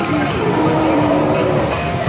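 Video slot machine's bonus-round music and game sound effects, a short melodic line over a steady noisy din.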